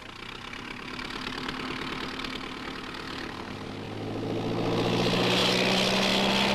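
Early biplane's piston engine running with a fast, even rattle, growing louder in the second half.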